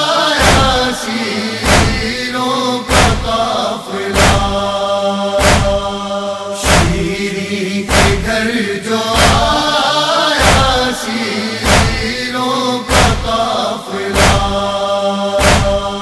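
A chorus chanting the noha's lament melody over matam: rhythmic chest-beating thumps, about one every 1.2 seconds.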